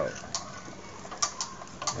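About four light, irregular metal clicks from the crank and piston of a Wilesco D10 toy steam engine, moved by hand.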